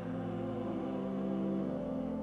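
Organ holding a sustained chord of steady tones, with the choir's last sung note fading out in the first second.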